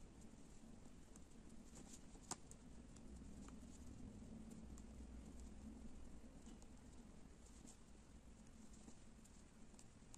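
Near silence: faint handling noise from hands working chenille loop yarn by hand, with scattered light ticks and one sharper click a little over two seconds in.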